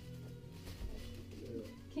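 A pause in a woman's singing: a faint steady hum, with one soft, short wavering vocal note a little past the middle.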